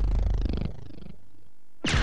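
The promo's music stops on a final low hit that rings out as a buzzing, fading tail. Near the end a new bright sound cuts in.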